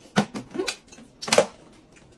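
Noodles being slurped off a fork in a few short, sharp sucks, the loudest a little over a second in.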